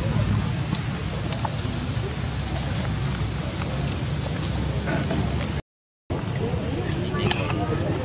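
Outdoor ambience: a steady low rumble with scattered small clicks and faint, distant voices. The sound cuts out for about half a second roughly two-thirds of the way through.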